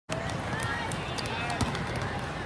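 Many people talking in a large gym hall, with scattered sharp knocks and taps from play on the courts; the loudest knock comes about one and a half seconds in.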